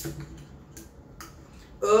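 A few faint light clicks of fingers and nails working at the pull tab of an aluminium beer can that has not yet opened. A woman's voice starts near the end.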